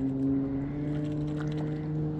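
A boat motor running with a steady hum, its pitch stepping up slightly under a second in.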